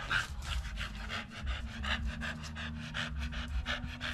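Large dog panting fast and evenly, about four to five quick breaths a second.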